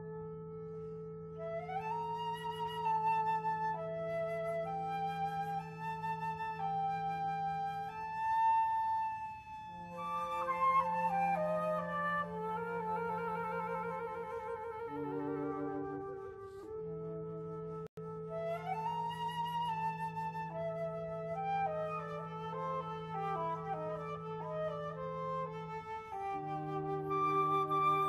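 Flute quartet playing: a low note is held as a drone under moving melodic lines in the higher flutes. The sound drops out for an instant about two-thirds of the way through.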